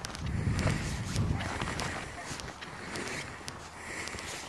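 Wind buffeting the microphone as a low rumble, strongest in the first second and a half, with irregular footsteps on a sandy path through dune grass.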